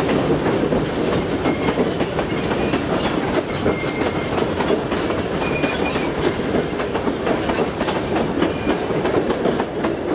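Heritage train carriages rolling past below, a steady rumble of wheels on rail with rapid clicking over the rail joints, easing slightly near the end as the last carriage clears.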